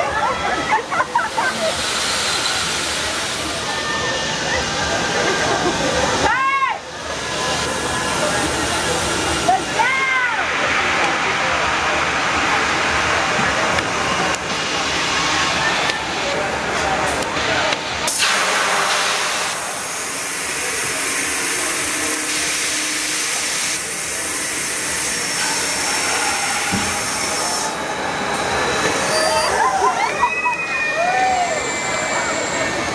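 Busy amusement-park noise around a drop-tower ride: crowd voices, two rising-and-falling cries about six and ten seconds in, and a sudden loud rush of hissing air about eighteen seconds in that runs on for several seconds.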